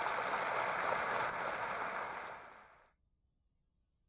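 Audience applauding after a talk ends, dying away and then cut off about three seconds in.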